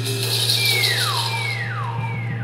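Theremin swooping down in pitch, high to low, three times under a second apart, each swoop a little fainter like an echo, over a steady low hum.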